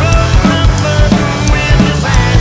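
Acoustic drum kit played live along with a Southern rock band recording: snare, kick drum and cymbals keeping a steady driving rock beat over the song.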